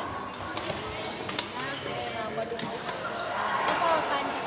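Badminton rally: several sharp hits of rackets on the shuttlecock, with brief shoe squeaks on the court floor and voices in the background.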